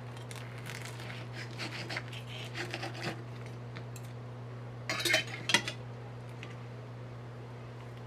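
Knife and fork cutting through the crispy fried pastry of a samosa, with faint crackling and scraping against a ceramic plate. About five seconds in, a few louder clinks of the cutlery on the plate as it is set down.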